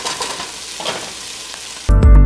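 Sausage slices sizzling as they fry in a pot, stirred with a wooden spoon that scrapes now and then. Loud music cuts in suddenly at the very end.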